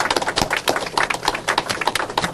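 Audience applauding: a dense patter of many hand claps.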